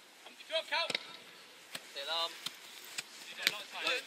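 About half a dozen sharp knocks of a football being kicked during play, spaced irregularly, with short distant shouts from players.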